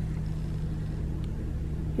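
A car running, a steady low hum heard from inside the cabin.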